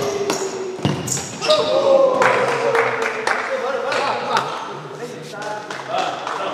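Futsal ball being kicked and bouncing on a sports-hall floor, a scattering of sharp thuds that echo in the hall, with players' voices calling out over them.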